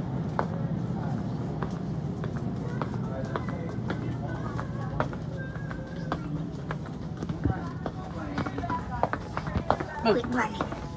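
Footsteps on a hard store floor, a child's running steps among them, heard as many quick sharp taps over indistinct background voices and a steady low hum.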